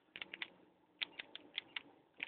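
Faint clicks of a remote control's buttons being pressed repeatedly: a quick run of about four, then about six more from about a second in, as the SEL button is pressed to step through the radio settings.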